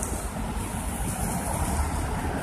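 Wind rushing over a phone's microphone, with street traffic noise beneath it.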